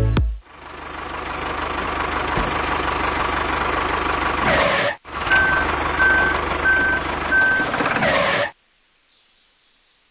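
A heavy vehicle's engine running, with a reversing alarm beeping four times at an even pace over it in the second half. It stops abruptly well before the end.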